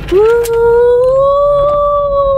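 A woman's long, held "woooo" whoop of excitement, starting just after the beginning and rising slightly in pitch as it is held. A low car-cabin rumble runs beneath it.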